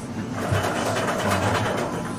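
Steady background din of a busy izakaya dining room: an indistinct murmur with a low hum underneath.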